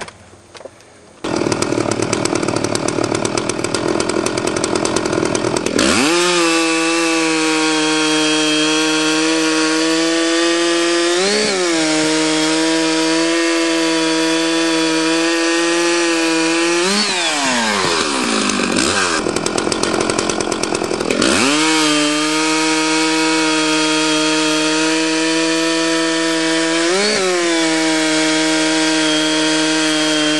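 An axe strike at the very start, then a chainsaw running at full throttle as it cuts through a log. The engine pitch rises briefly twice as the bar breaks free of the cut. In the middle the engine winds down and then comes back up to full throttle.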